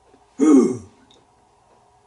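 A man clears his throat once, briefly, with a sound that falls in pitch about half a second in.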